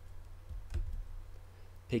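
Two computer mouse clicks, about a quarter second apart, over a steady low hum.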